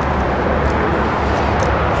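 Steady background hum of road traffic, an even rushing noise with a low rumble.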